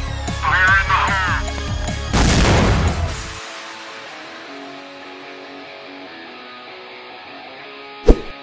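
Background electronic music with a steady, bass-heavy beat. A short wavering pitched sound comes about half a second in, and a loud burst of noise about two seconds in. After that the beat and bass drop out, leaving a quieter music bed.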